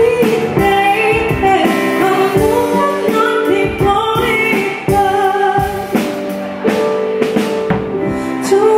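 Live band: a woman singing held, gliding notes into a microphone over a drum kit played with sticks and the band's accompaniment.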